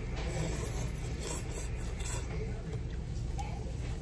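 Mouthfuls of noodle soup being slurped and chewed, a few faint, brief slurping sounds in the first half, over a steady low hum of the room.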